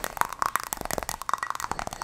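Fast ASMR hand sounds close to the microphone: cupped hands patting and popping in a rapid run of hollow pops.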